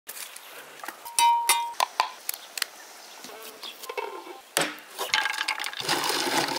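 Outdoor cooking sounds: a run of sharp clicks and metal clinks, with one short ringing metal clink about a second in and a rougher scraping stretch in the second half.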